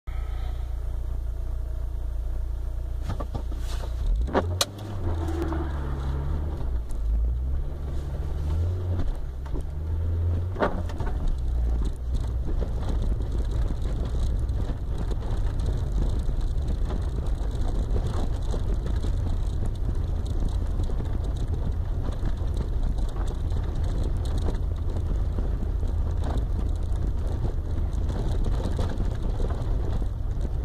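Car engine and tyre noise heard from inside the cabin while driving on a snow-covered road: a steady low rumble, with the engine note rising and falling several times between about 4 and 11 seconds in. A couple of sharp clicks come at about 4 and 10 seconds in.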